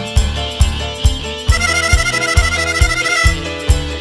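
Band music with no singing and a steady beat of bass and drum pulses, a little over two a second. About a second and a half in, a high lead melody enters and holds a sustained two-note line for nearly two seconds.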